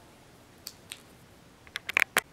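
A few small clicks and taps from tablet computers being handled and set down, with a quick cluster of sharper clicks near the end.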